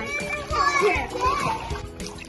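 Children's excited voices over steady background music.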